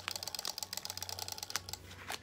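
Clear adhesive tape being peeled off its roll, giving a fast, uneven run of small crackling clicks, with a slightly louder click about one and a half seconds in.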